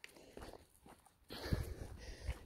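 Faint footsteps on a pavement, a few soft steps, with a low rumbling noise that comes up about a second and a half in.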